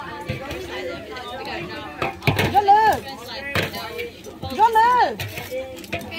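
Voices talking and exclaiming, with two sharp knocks about two and three and a half seconds in.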